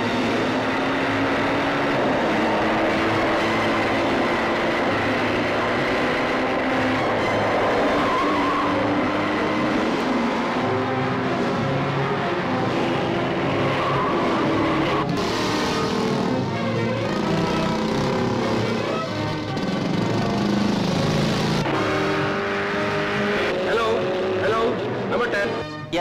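Film chase soundtrack: an open jeep's engine running on the road, mixed with background music.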